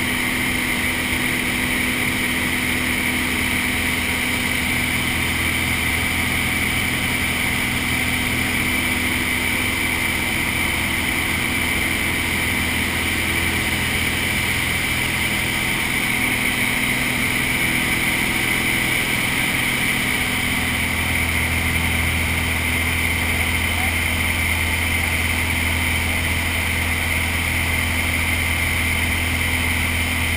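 Steady drone of a small propeller plane's engine and propeller heard inside the cabin in flight. Its low hum grows stronger about two-thirds of the way through.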